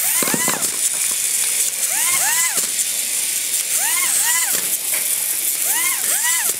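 Battery-powered toy robots giving a repeating electronic chirp: a pair of quick rising-then-falling chirps about every two seconds, very evenly spaced, over a steady high hiss from their small gear motors.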